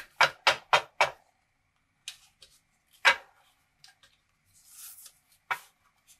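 Stack of card stock knocked edge-down on a hard surface to square it: five quick knocks at about four a second, then a single knock a couple of seconds later and a lighter one near the end, with a brief papery rustle just before it.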